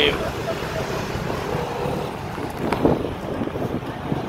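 Steady low rumble of outdoor background noise, with faint voices in the first second or two and a short click near the three-second mark.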